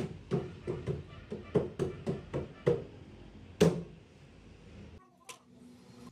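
Hand-worked wood abrasion: a plywood block rubbed down by hand in short, even strokes, about three a second, stopping about three seconds in, with one louder stroke a little later.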